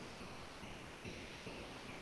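Faint, steady background hiss: microphone room tone.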